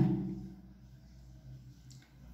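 A spoken word trails off at the start, then quiet room tone with a faint steady low hum.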